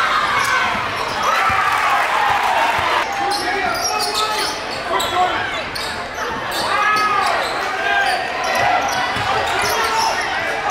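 Live basketball game sound in a gymnasium: a ball bouncing on the hardwood court and short sneaker squeaks over continuous crowd chatter, all echoing in the hall.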